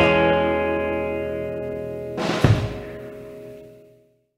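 Rockabilly band's final guitar chord ringing out and slowly dying away as the song ends, with a closing drum and cymbal hit about two and a half seconds in, then fading out.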